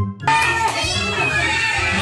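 Background music with a steady bass line, and about a quarter second in a crowd of children shouting and chattering comes in under it.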